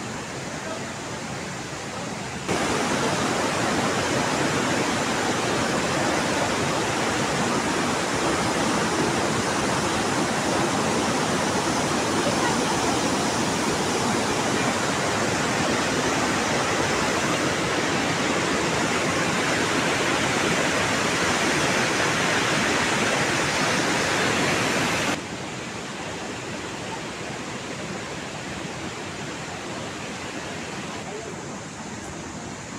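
A steady rushing noise with no distinct events. It jumps louder a couple of seconds in, holds level, and drops back abruptly a few seconds before the end.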